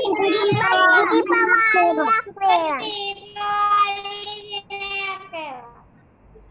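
A child singing, with a long held note in the second half.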